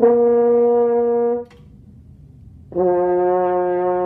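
French horn playing a lip push-up: a held high F for about a second and a half, then after a short pause a held lower C of about the same length, both notes steady in pitch.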